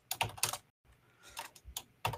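Typing on a computer keyboard: a quick run of keystrokes in the first half second, then a few scattered keystrokes later on.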